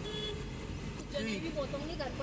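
Steady low rumble of a car driving along a wet dirt road, heard from inside the cabin, with voices over it.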